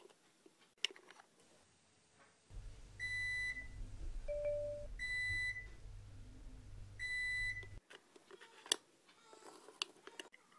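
Electronic oven-timer beeping: three high beeps about two seconds apart over a steady low hum, which cuts off suddenly, signalling the baking time is up.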